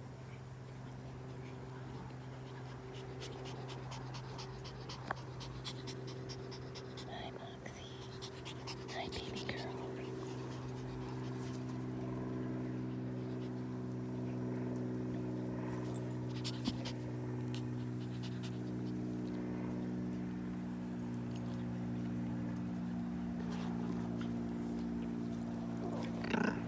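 Dogs playing together on grass, panting, with a few small clicks and jingles, over a steady mechanical hum that runs throughout.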